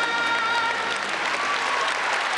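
Audience applause building as the final held chord of a stage musical number fades out in the first half-second or so.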